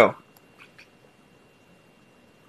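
A man's voice ends a word, then quiet room tone with a few faint clicks of a computer mouse while text is selected on screen.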